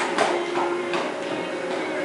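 Faint music playing under a steady hiss of background noise.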